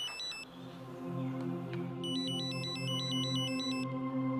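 Mobile phone ringtone, a fast electronic trill in two rings: the first ends about half a second in, and the second runs from about two seconds to near the end. Steady sustained background music plays underneath.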